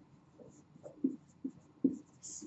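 Dry-erase marker writing on a whiteboard: about five short separate strokes of the tip against the board.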